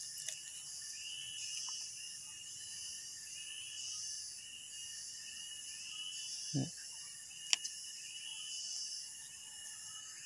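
A steady background chorus of insects chirring in several high pitches, with one sharp click about seven and a half seconds in.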